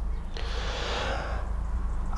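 A man drawing one breath in, lasting about a second, over a steady low rumble.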